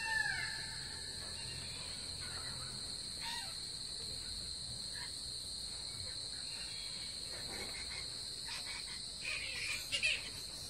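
Steady, high-pitched drone of an insect chorus, holding two even pitches throughout. A bird gives a single caw-like call at the very start, and a brief louder sound comes near the end.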